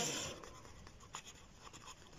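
A red pen writing on a sheet of paper by hand, faint short strokes as a word is written out.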